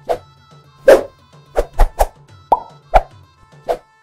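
About eight sharp pops at an uneven pace over soft background music, an edited transition sound effect. The music cuts off just before the end.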